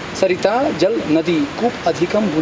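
A man talking steadily in conversation. A faint, thin, steady high tone comes in about a second in.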